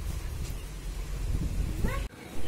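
Low rumbling wind noise on the microphone of a handheld camera filming in the open, with a short rising cry just before the end.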